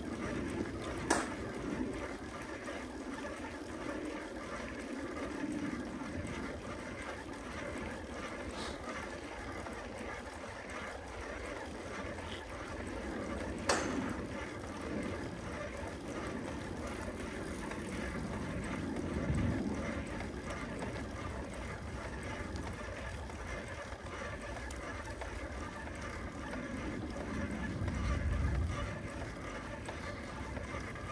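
Steady rolling noise of a bicycle being ridden on asphalt, with a few sharp clicks from the bike, the loudest about a second in and in the middle. A low rumble swells up twice in the second half.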